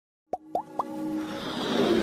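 Intro jingle sound effects: three quick rising plops, each pitched higher than the last, then a whoosh that swells louder toward the end.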